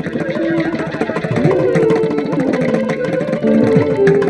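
Carnatic violin playing a melody full of sliding, ornamented notes, with mridangam drum strokes beating a steady rhythm beneath it.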